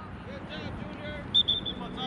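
Faint shouting voices carrying across an outdoor soccer field over a low rumble of wind on the microphone, with a brief high-pitched trill of three or four quick pulses a little past halfway.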